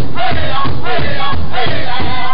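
Powwow drum group singing a women's fancy dance song: men's voices in high, falling phrases over a steady beat on one large drum struck by several drummers together, loud.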